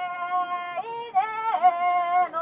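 Kiyari, the traditional Japanese work chant sung before a mikoshi is lifted: a single voice holds long notes, ornamented with sudden leaps and dips in pitch. A few faint clicks sound near the end.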